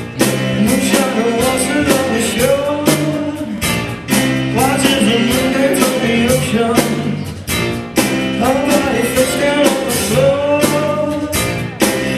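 Live piano-rock band playing a song, with keyboard in the mix. The loudness dips briefly about every four seconds as the phrases turn over.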